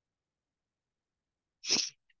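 Dead silence, then near the end a single short breath sound from a woman, about a third of a second long and breathy rather than voiced.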